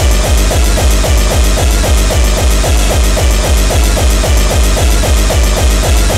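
Early hardcore (gabber) music from a DJ mix: a fast, heavy kick drum beat in a steady rhythm under dense synth layers.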